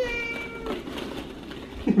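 A baby's sustained vocalizing, one held 'aah' that rises at the start and then stays level for under a second.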